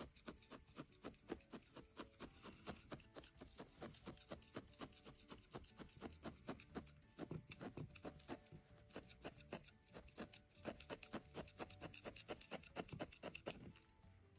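Felting needle stabbing repeatedly into wool roving on a felting pad: faint, quick scratchy pokes at about three to four a second, with a brief pause about ten seconds in. Each stroke is the barbed needle tangling the fibres to firm up the shape.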